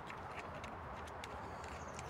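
A few faint clicks from a hand handling a cordless mini chainsaw's bar and chain, the saw switched off, over a low steady background hum.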